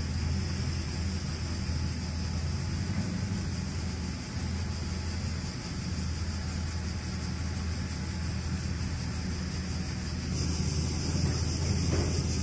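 Steady low engine rumble, with a hiss that grows louder near the end.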